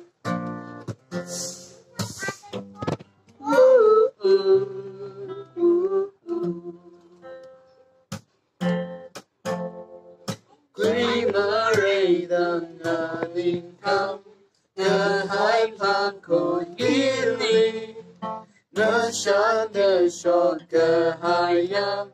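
Acoustic guitar strummed and picked on its own for the first ten seconds or so, then a man's singing voice joins over the guitar from about eleven seconds in.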